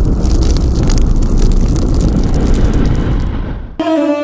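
A loud, rumbling fire-like whoosh sound effect with fine crackles and a deep low rumble, cut off abruptly near the end.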